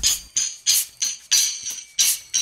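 Trap instrumental beat in a stripped-down section: only bright percussion hits, tambourine- or hi-hat-like, at a steady pulse of about three a second (eighth notes at 96 BPM), with no bass or melody.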